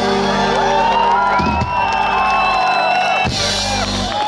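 Live pop-rock band over a PA ending a song on a long held chord, with the crowd whooping and cheering over it; the chord stops a little before the end, followed by a short burst of noise.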